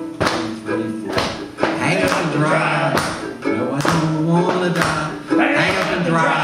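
Banjo ukulele strummed in a steady rhythm, with voices singing the refrain along with it from about two seconds in.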